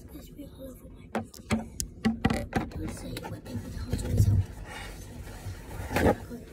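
Handling noise from a phone being carried and moved around a kitchen counter: a run of scattered knocks and clicks, with a louder dull thump about four seconds in. Near the end comes a short papery rustle as a paper towel is pulled off the roll.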